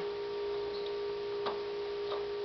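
A steady, even electrical hum or whine on one pitch, with a soft click about one and a half seconds in.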